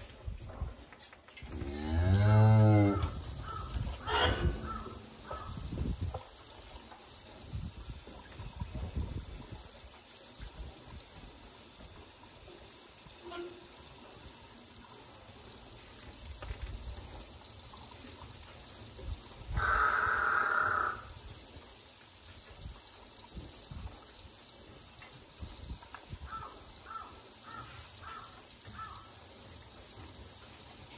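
Cattle mooing: a low, loud moo about two seconds in, and a second, higher-pitched call lasting about a second and a half around the middle.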